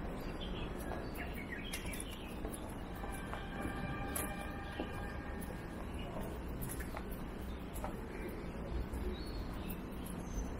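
Birds chirping and calling over a steady low background rumble, with a few short clicks.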